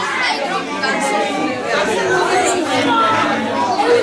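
Indistinct chatter: several voices talking over one another in a room.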